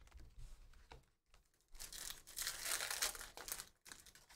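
A foil trading-card pack (2022 Topps Chrome Sapphire) being torn open and crinkled by hand, with a crackly tearing sound that builds a little under two seconds in and lasts about two seconds.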